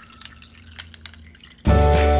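Lemonade pouring into a glass of ice, with a soft trickle and a few drips, while the background music drops out. Music with a whistled melody comes back in near the end.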